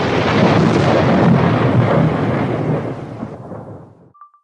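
A thunder-like rumbling sound effect. It starts suddenly, loud and full of low rumble, and fades away over about three and a half seconds.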